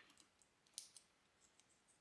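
Near silence with a few faint clicks and crackles of adhesive tape being handled and pinched between fingers as it is folded, the clearest a little under a second in.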